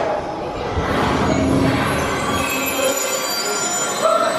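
ART Engineering family launch coaster train rolling along its steel track through the station, a steady rumble and rattle of the wheels with a faint high squeal in the second half.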